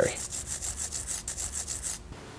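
Small hand wire brush scrubbing metal brake pad clips. It makes quick back-and-forth scraping strokes, several a second, that stop near the end.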